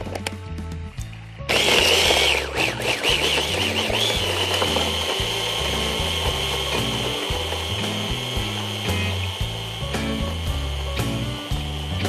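Electric hand blender running in its covered chopper beaker, blending feta, Greek yogurt and a whole egg into a sauce. It starts suddenly about a second and a half in with a high whine that wavers for the first couple of seconds, then holds steady.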